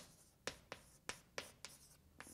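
Chalk writing on a blackboard: quiet, separate short taps and scratches, about six in two seconds, as characters are written.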